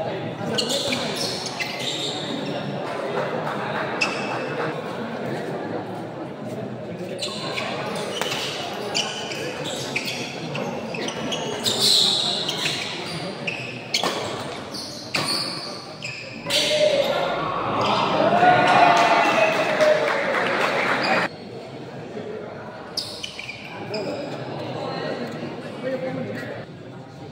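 Badminton doubles rallies in a large indoor hall: repeated sharp racket strikes on the shuttlecock and players' footwork on the court, over crowd chatter. From about 16 to 21 seconds in, the crowd's voices swell into shouting, then drop off abruptly.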